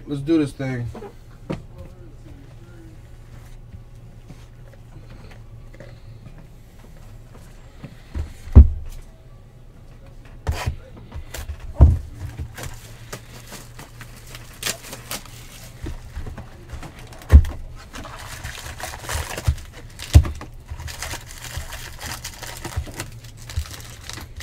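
Boxes of trading cards being handled and set down on a table: several sharp knocks a few seconds apart, with smaller clicks and a stretch of cardboard and plastic rustling near the end, over a steady low hum.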